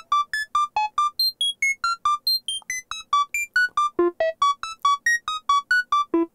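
Doepfer modular synthesizer sequence of short, pitched, plucked-sounding notes, about five a second, mostly on one repeated pitch with some higher and lower notes mixed in. The notes run through a Doepfer A-188-2 tapped bucket-brigade (BBD) analog delay set for a light flanging effect.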